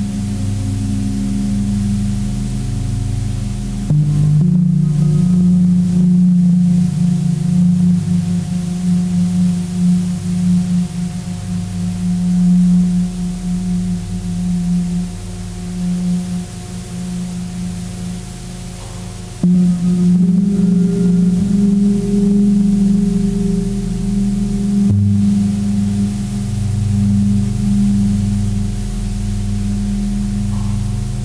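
Soundtrack of a computer-animation piece: low, sustained droning tones that ring like a gong or singing bowl. The chord shifts abruptly about 4, 19 and 25 seconds in.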